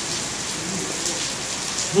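A steady hiss of noise, with faint voices low underneath.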